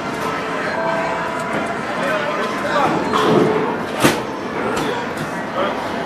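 Busy arcade din of background voices and electronic machine tones. A single sharp click about four seconds in stands out as the loudest sound.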